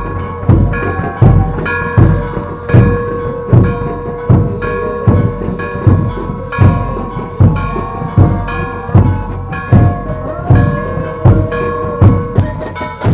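Procession band music: a bass drum beat about every three-quarters of a second, with snare and cymbal crashes, under a held, slowly changing melody.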